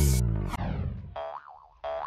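Background music dying away, ending on a falling, sliding tone followed by a brief warbling tone.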